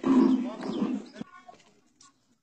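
A raised voice calling out, carrying on from the instruction just before and breaking off a little over a second in, followed by faint scattered sounds.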